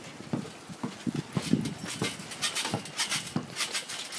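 Basketball dribbled on bare dirt and grass, giving a series of irregular dull thumps.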